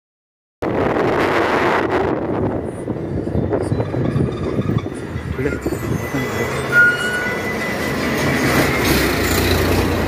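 Steady engine, tyre and wind rumble of a goods truck driving along a highway, heard from its open back, with heavy lorries going past close by. The sound cuts in suddenly about half a second in.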